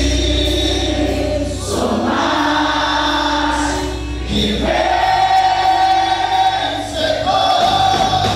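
A crowd of young voices singing a gospel worship song together over a band with bass, in long held notes.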